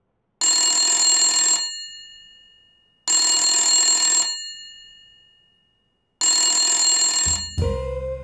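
A telephone bell ringing three times at a steady cadence, each ring about a second long and fading out after it. Music comes in near the end.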